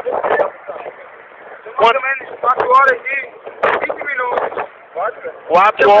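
Men's voices talking and calling out in short, excited spells, with brief pauses between them.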